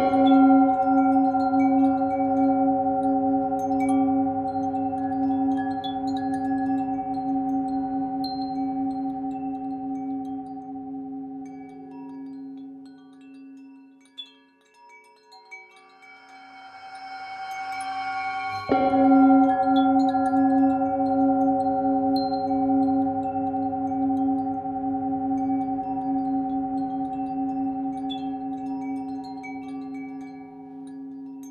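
Tibetan singing bowl struck, its deep tone wavering slowly as it rings and fades away over about fourteen seconds. The sound swells up again and the bowl is struck a second time about two-thirds of the way through, ringing out to the end. Faint wind chimes tinkle throughout.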